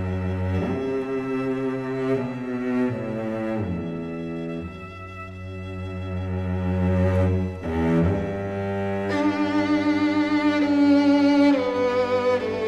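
A string quartet plays held, sustained chords over low cello notes that change every few seconds. About nine seconds in, the upper strings swell louder and higher with vibrato.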